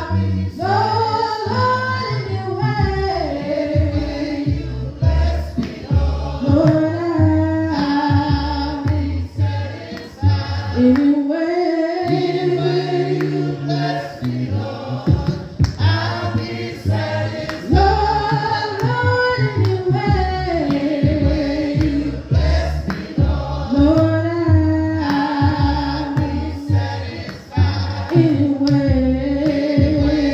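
A congregation singing a slow gospel hymn together, with long held notes that swell and break between phrases.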